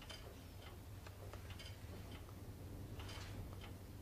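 Faint, steady ticking of a clock, about three ticks a second, over a low steady hum.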